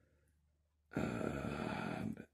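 Near silence, then about a second in a man's long, drawn-out "uhh" hesitation sound, held steady for about a second.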